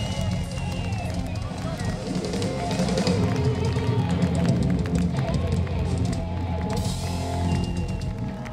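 Live hard rock band playing in an arena, heard from within the crowd: a drum kit with bass drum and cymbal crashes under electric guitar, loudest in the middle.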